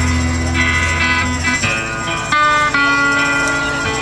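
Live band playing the instrumental introduction of a slow song: strummed acoustic guitars over bass and drums, with long held notes and the chord changing several times.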